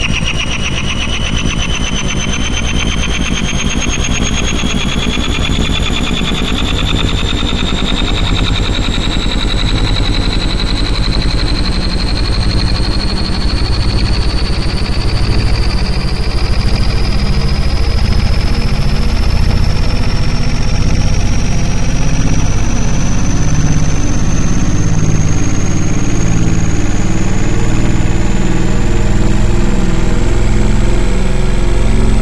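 MIDI render of piano notes through a piano soundfont, repeated so fast that they blur into a continuous harsh buzz. A whine rises steadily in pitch throughout as the repetition tempo keeps speeding up.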